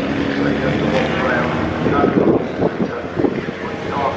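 Yamaha FZ750 race bike's inline-four engine running at low speed as the bike rides away, its note growing fainter after about two and a half seconds.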